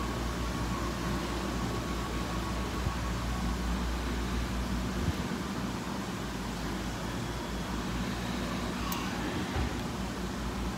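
Steady low hum and hiss of a store's aquarium aisle, with a faint click about three seconds in.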